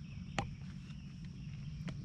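Boat motor running with a low steady hum, under a faint steady high insect drone; a sharp click comes about half a second in and another near the end.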